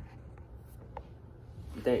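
Faint scratching and a couple of light clicks of a phone being handled and set in place on a desk, with a single short spoken word near the end.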